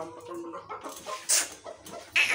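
Rooster clucking in short, separate notes, with one sharp noisy burst about a second and a half in.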